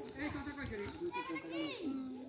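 Several children's voices chattering at once, overlapping one another.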